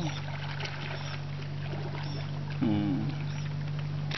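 A steady low motor hum, with light crinkling of a plastic bag being handled.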